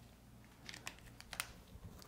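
Faint scratching and a few light clicks from a dry-erase marker on a whiteboard, the sharpest click about a second and a half in.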